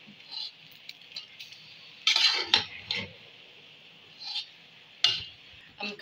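Slotted metal spatula scraping and knocking against an aluminium cooking pot as a pot of cooked rice is turned over with sugar, in irregular strokes; the loudest come about two seconds in and again just after five seconds.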